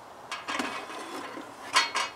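Metal parts of a small steel brazier being handled: light rattling and clinking, then one sharp metal clank near the end as a part is set in place.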